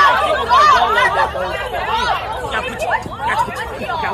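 Several people's voices talking over one another in an agitated group, too overlapped to make out words.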